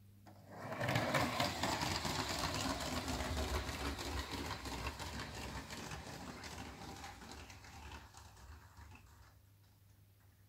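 Lego train carriage on Bricktracks wheels running in miniature steel ball bearings, rolling down a ramp and along plastic Lego track with a fast, even rattle of wheels on rail. The rattle starts about half a second in, is loudest over the next few seconds, then fades away gradually as the car rolls off, dying out near the end. It is a long free roll, the sign of low-friction bearings.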